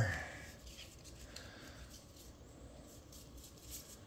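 Trading cards and card stacks being picked up and set down on a playmat: faint, scattered light taps and rustles, a little louder just before the end.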